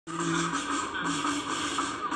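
Parade video's audio playing through computer speakers and picked up off the screen: a few held musical notes over a steady noisy background.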